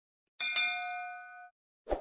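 Notification-bell sound effect: a single bright ding that starts with a click and rings for about a second, followed near the end by a short soft pop.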